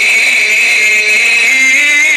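A man's voice in melodic Qur'anic recitation (tilawa), heard through a mosque microphone. He holds a long note, then moves into a wavering, ornamented line in the second half.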